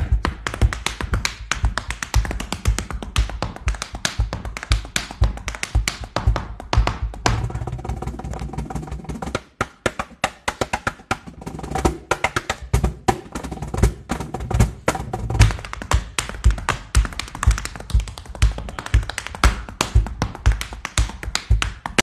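Rapid percussive dance footwork, hard-soled shoes clicking on a wooden floor, played together with a cajón's deep bass thumps and sharp slaps on its front panel. The rhythm runs fast and dense, with a brief break about halfway through.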